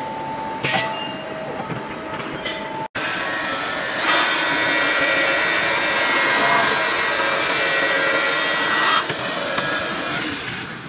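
Straight seam grinding machine grinding the welded seam of a steel sink sheet: a loud, steady, harsh grinding hiss that builds about four seconds in and eases off near the end. Before it, about three seconds of a seam pressing machine's steady hum and a few metallic clanks, cut off abruptly.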